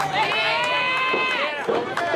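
A loud, drawn-out human voice holds long notes that bend in pitch, the longest lasting over a second, followed by shorter voice sounds.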